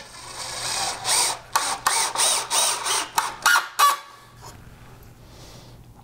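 Cordless drill driving a wood screw into a cedar 2x4 ledger board without a pilot hole, running in pulses for about four seconds, then stopping.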